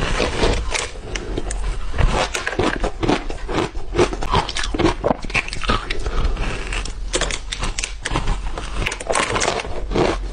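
Crunching and cracking of teeth biting into a block of ice coated in matcha powder, a dense run of sharp cracks one after another.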